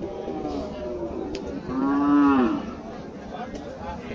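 A cow or calf moos once, a single pitched call under a second long about two seconds in, over background voices.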